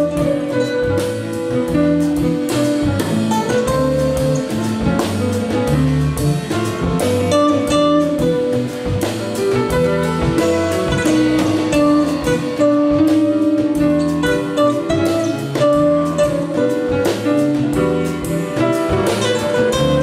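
Live flamenco-jazz: Spanish guitar playing with grand piano and a drum kit, the drummer keeping time on the cymbals.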